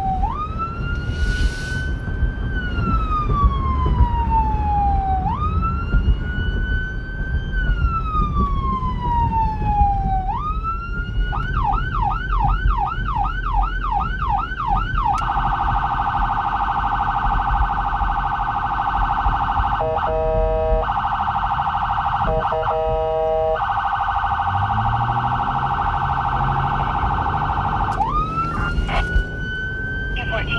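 Whelen 295SL100 electronic siren through dual 100-watt speakers, sounding a wail that rises and falls slowly in roughly five-second cycles, switching to a fast yelp about ten seconds in. Around fifteen seconds in it changes to a rapid, steady tone, broken briefly a few times, before going back to the slow wail near the end, all over the vehicle's low road and engine noise.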